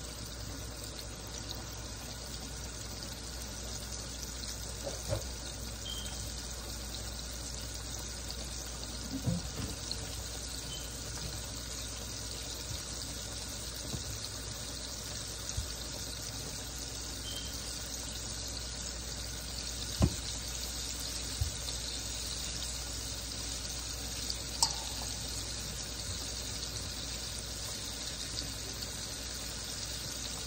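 Chicken deep-frying in a skillet of hot oil: a steady sizzle, with a few sharp clicks and knocks now and then, the loudest about two-thirds of the way through.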